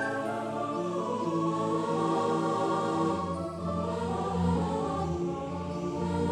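Music: a choir sound singing slow, sustained chords, the held notes changing about once a second.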